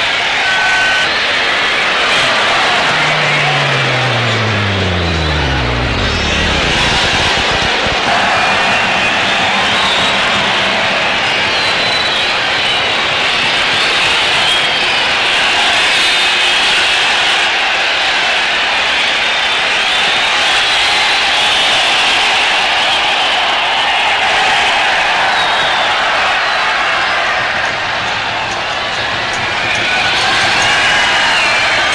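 Stadium football crowd: a steady wash of crowd noise, with high wavering whistles or chants over it from about eight seconds in. In the first seconds a low tone drops steadily in pitch and fades out.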